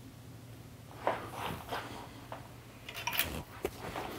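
Plastic one-handed bar clamps being set and squeezed onto a wooden file handle on a wooden workbench. There is a knock about a second in, then a series of short clicks and light rattles.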